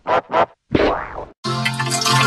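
Heavily effect-processed edit audio: two quick blips, then a longer sound that fades out, and after a short silence, from about one and a half seconds in, a sustained electronic music passage with steady held tones.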